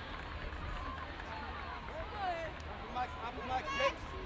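Faint, distant voices of players and spectators calling out on the field, with a few louder short shouts near the end, over a steady low background rumble.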